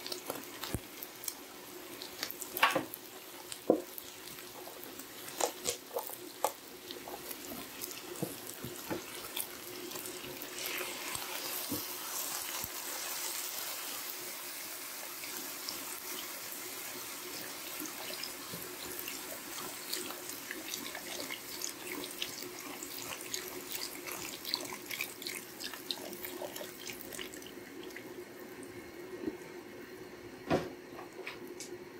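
Chicken stock poured into a hot skillet of ground beef, pasta shells and tomato sauce, the liquid splashing and bubbling with many small pops and crackles. There are a couple of sharp knocks a few seconds in, and a steady low hum underneath.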